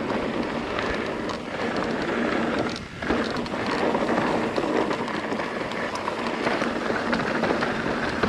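Mountain bike tyres rolling fast over a dry dirt and gravel downhill trail, a steady rushing noise that briefly drops about three seconds in.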